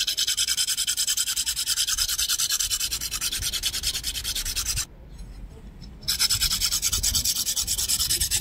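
Hand file rasping against the edge of an aluminium bar in quick, even strokes, rounding off its sharp corners. The filing stops for about a second midway, then resumes.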